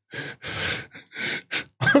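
A man laughing silently and breathily: a run of about five short gasps of breath with little voice in them.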